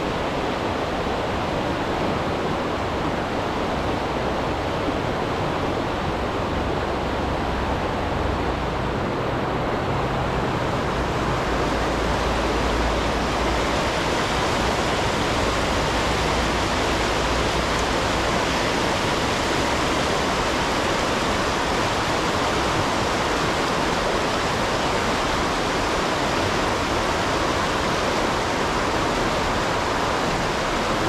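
River water pouring over a low dam: steady rushing whitewater, a little brighter from about ten seconds in.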